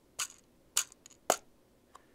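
Jacarandaz pocket cajón, a small hand-held wooden box drum, tapped with the fingers: three sharp strikes about half a second apart, the 'ti, ti' fills and closing 'tu' of a four-note samba pattern.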